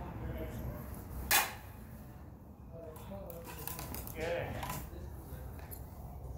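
A single sharp metallic clack about a second and a half in, as the steel sparring rapier and jian strike during a fencing exchange.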